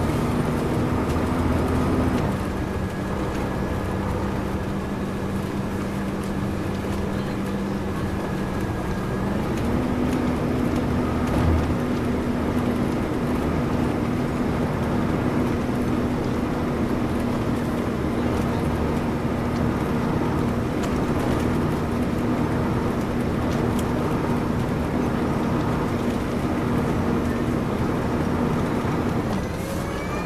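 Detroit Diesel Series 60 engine of a 2002 MCI D4000 coach heard from the rear of the cabin, running steadily at road speed over tyre and road noise. Its note dips about two seconds in, rises again about nine seconds in and holds, then drops just before the end; a single thump comes about a third of the way through.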